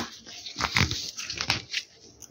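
A metal zipper on a cloth cover being pulled by hand, with fabric rustling and a few irregular clicks.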